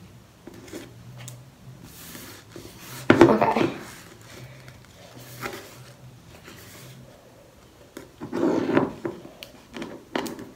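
Light clicking and rubbing of Kinetic Rock grains being picked off a table and dropped into a small container. A louder vocal burst comes about three seconds in and another near the end.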